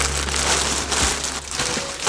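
Plastic packaging crinkling and rustling: a hoodie in a clear plastic bag being pushed into a poly mailer.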